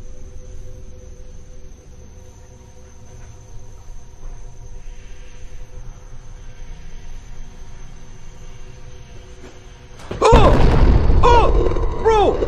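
Low rumbling background with a faint steady hum, then about ten seconds in a sudden loud outburst of wordless yelling from a startled man, his voice rising and falling in a string of short cries.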